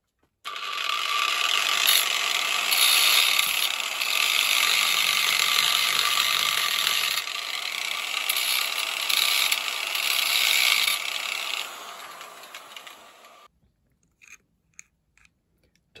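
Electric angle grinder switched on and running with a steady whine while grinding steel, its edge cutting into the jaw stop of an adjustable wrench to widen its opening. It is louder in spells. Near the end it winds down and stops.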